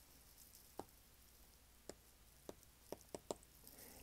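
Near silence with about six faint, short clicks, more frequent toward the end: a stylus tip tapping on a tablet's glass screen as a word is handwritten.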